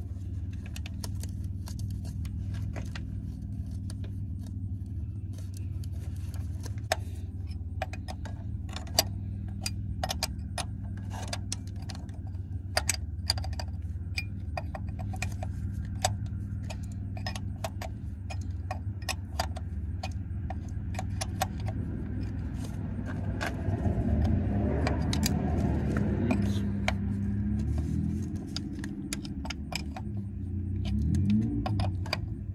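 Open-end wrench clinking against a brass air-line fitting as the fitting is threaded and tightened onto a truck transmission's splitter valve: many short, sharp, irregular metallic clicks over a steady low hum. A low rumble swells in the last several seconds.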